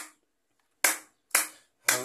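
Hand clapping keeping time. After a pause, three sharp claps land about half a second apart.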